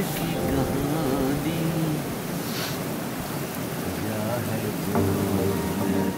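Voices talking briefly, at the start and again near the end, over a steady rushing hiss.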